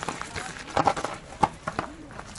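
Irregular knocks and clacks of a mountain bike's tyres and frame striking rocks as it climbs a rocky, stepped trail, with faint voices in the background.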